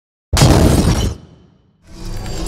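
A sudden, loud shattering, breaking-apart sound effect that dies away within about a second, set to a rendered car flying apart into its parts. Another steady sound starts just before the end.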